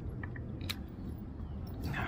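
Small metallic clicks of fishing pliers being worked at a hook, one sharper click about two-thirds of a second in, over a steady low rumble.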